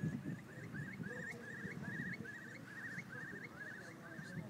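A bird calling in a long, even series of short rising notes, about three a second, with a low rumble underneath.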